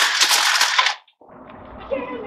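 Milwaukee M18 Fuel cordless hedge trimmer's reciprocating blades cutting through a rack of wooden dowels: a rapid, dense crackle of snapping wood that cuts off abruptly about a second in.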